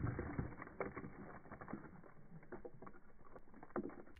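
Gingerbread house crunching apart under a hammer blow, then many small clicks and ticks of gingerbread and candy fragments falling and scattering on concrete, dying away.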